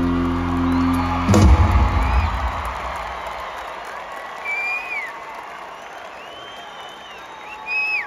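A rock band's final held chord, cut off by one last full-band hit about a second and a half in, which rings out and fades. Arena crowd cheering follows, with shrill whistles and whoops.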